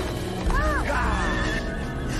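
A horse whinnies once, about half a second in, as it rears under its rider. The call rises and falls, then trails off in a falling quaver, over background music.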